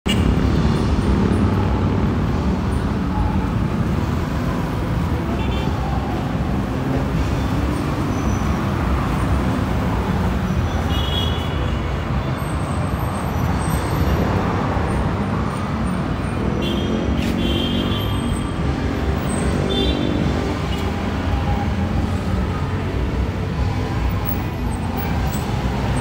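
Steady street traffic noise from passing cars and motorbikes, with occasional voices of passersby mixed in.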